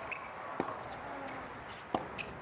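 Tennis ball struck by rackets in a baseline rally: two sharp hits about a second and a half apart, the second the louder.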